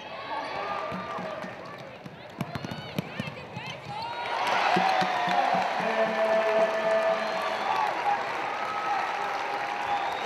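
Basketball game sounds on a hardwood court: sneakers squeaking and the ball bouncing in the first few seconds. About four seconds in, crowd voices and shouting rise and stay louder.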